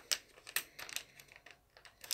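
Light, irregular clicks and crinkles of a makeup brush set's metallic plastic packaging being handled, busiest in the first second and thinning out toward the end.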